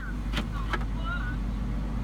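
Car engine idling, heard as a steady low rumble inside the cabin, with a couple of faint clicks in the first second.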